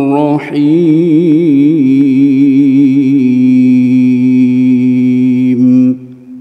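A reciter's solo voice chanting the Qur'an in melodic tilawah style, with wavering ornamented turns early on and then one long held note that stops just before the end, an echo trailing off after it.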